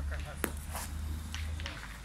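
Voices of onlookers at a pétanque game, with one sharp clack about half a second in. A low wind rumble on the microphone stops near the end.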